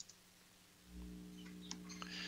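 A few faint computer mouse clicks, as trading charts are switched. About a second in, a low steady hum comes up and holds.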